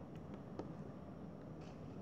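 Faint hand-handling sounds as fingers press soft clay on a tabletop and reach into a plastic cup of water, with a light click about half a second in.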